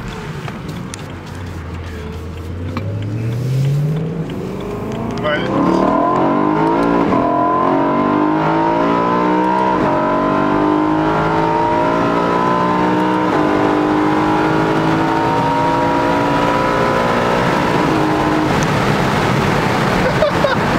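BMW M3 engine heard from inside the cabin under hard acceleration. The revs climb gently at first, jump up sharply and louder about five seconds in, then hold a long, loud, slowly rising note for most of the rest.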